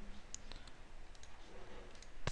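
Faint computer mouse clicks, a few quick ones, as frames are selected and Apply is pressed in a software dialog.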